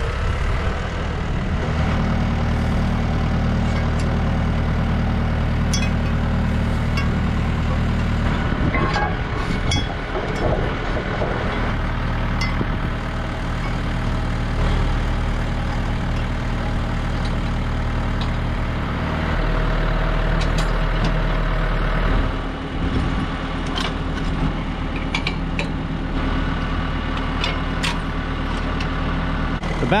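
New Holland T2420 compact tractor's diesel engine running steadily, its note shifting a few times, with scattered metallic clinks and knocks as the aerator is worked loose from the three-point hitch.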